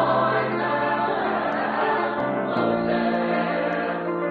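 A church choir singing long held chords, moving to a new chord a little past halfway through.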